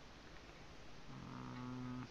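A man's low, steady closed-mouth hum ("hmm"), held at one pitch for about a second, starting about a second in and stopping abruptly; faint room noise before it.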